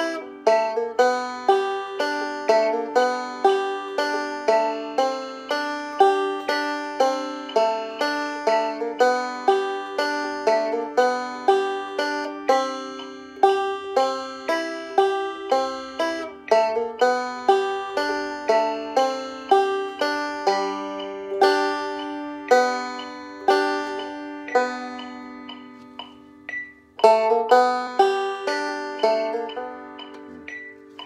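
Open-back banjo played solo at a slow, even tempo, plucked notes ringing out one after another in a repeating pattern. The playing thins out briefly near the end, then picks up again.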